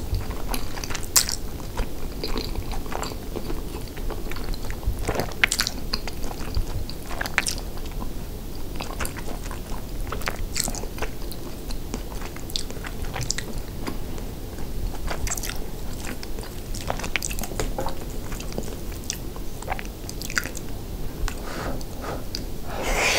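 Close-miked chewing of soft, cheesy chili cheese rice casserole, a steady run of mouth sounds broken by frequent short, sharp clicks.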